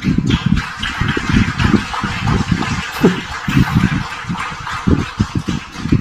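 Audience applauding, a dense unbroken clatter.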